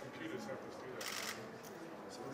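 Quiet conversation among a small group standing together, with a brief rustle about halfway through.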